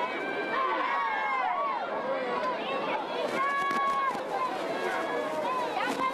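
Large crowd of spectators shouting and calling out, many overlapping voices, with no single speaker standing out. A few sharp knocks are heard about halfway through.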